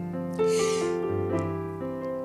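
Keyboard playing slow, sustained chords, with the chord changing about half a second in, again at about a second, and near the end.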